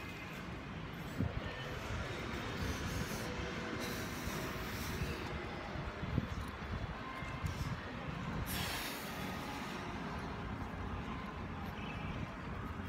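Steady rumble of a metro train running on an elevated line, with short bursts of hiss about four seconds and eight and a half seconds in.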